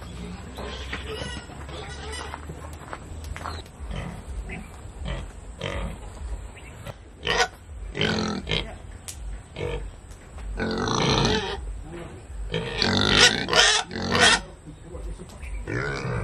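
Domestic pig in a wooden pen calling. Short calls start about seven seconds in, followed by longer, louder ones around eleven and again around thirteen to fourteen seconds.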